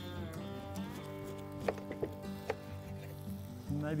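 Soft background music with steady held notes, broken by a few sharp taps of a knife cutting a lemon on a wooden chopping board.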